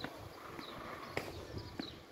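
Tennis balls struck by rackets and bouncing on a clay court: a few separate sharp pops, the sharpest a little after a second in.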